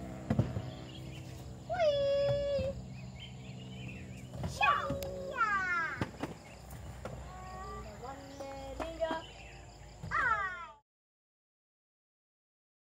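A few high-pitched wordless calls. The first, about two seconds in, is held near one pitch for close to a second; later ones sweep steeply down in pitch. The sound cuts off suddenly shortly before the end.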